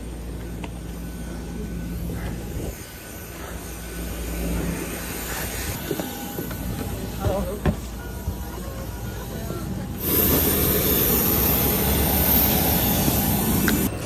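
Airport apron ambience: a steady low hum of aircraft and ground equipment with a few short knocks, on a walk up to a Ryanair jet and its boarding stairs. About ten seconds in it cuts abruptly to a louder, steady rushing noise with strong hiss, like a train in motion.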